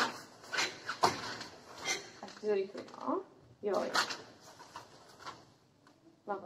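Sharp cracks about once a second, then more spread out, as karate techniques of a kata are performed, each strike snapping the cotton gi. Short voiced sounds come between the strikes, about midway.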